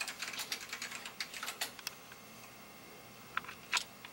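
A quick run of light clicks and taps that thins out after about two seconds, with two sharper clicks near the end.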